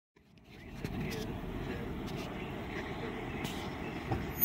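Steady low rumble of an idling car, heard from inside the car, with a few faint knocks as the phone is handled.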